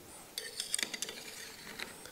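Light metallic clicks and clinks as a steel tubular part is handled and set onto the action of a rifle, a quick cluster of taps about half a second to a second in and one more near the end.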